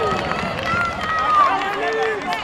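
Several voices calling out at once over a steady background of crowd noise.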